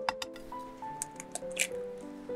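A raw egg cracked and pulled apart by hand over a glass baking dish: a few short sharp cracks and a wet squish as the egg drops in, over background music.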